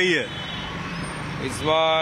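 Street noise, then about a second and a half in a vehicle horn starts sounding, one long steady note at a fixed pitch.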